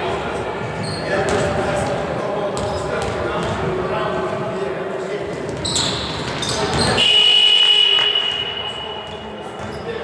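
Basketball being played in an echoing gym hall: players' voices and ball bounces on the hardwood floor. About seven seconds in, a steady high whistle note, most likely the referee's whistle, sounds for about a second and a half and is the loudest sound.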